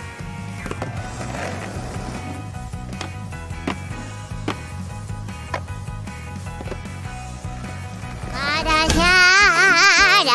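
Skateboard wheels rolling on asphalt, a steady low rumble with a few sharp clicks, under background music. Near the end a loud warbling tone with a fast wobble rises over it.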